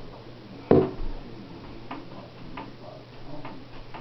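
Someone rummaging for a set of harmonicas: one loud knock a little under a second in, then scattered light clicks and taps as things are moved about.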